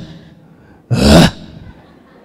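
A man's short, sharp, breathy gasp close into a handheld microphone, about a second in, lasting under half a second.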